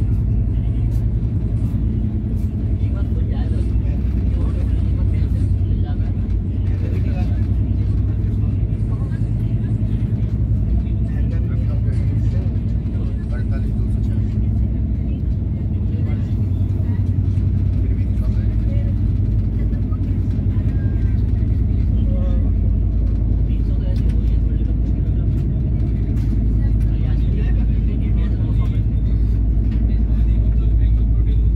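Express passenger train running at speed, heard from inside the coach: a steady low rumble of wheels and running gear on the track that holds even throughout.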